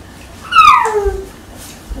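A dog's short, high whine that falls in pitch, about half a second long, starting about half a second in.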